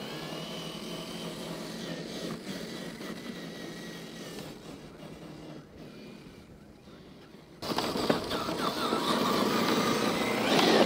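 A 1/10 scale RC crawler truck driving over dirt and rocks: the whine of its electric motor and gears with tyres crunching on gravel. Fainter through the first part, it turns suddenly louder and closer about seven and a half seconds in.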